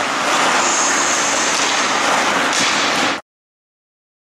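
Ice rink sound: hockey skates carving on the ice over a steady hiss, with a brief higher hiss about a second in. It cuts off suddenly a little after three seconds.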